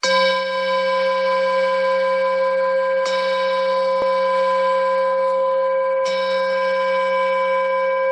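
A meditation bell struck three times, about three seconds apart, each strike ringing on with a steady chord of clear tones that overlaps the next. The bell opens the meditation session.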